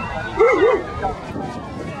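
A dog giving two short, quick barks about half a second in, over the chatter of a crowd.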